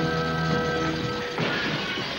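Dramatic score with held notes, then, about one and a half seconds in, a crystal chandelier crashes to the floor with a long shattering of glass and metal.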